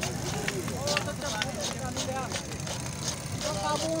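A hand saw cutting through a cow's horn in short, quick repeated strokes, over many people talking and a steady low rumble.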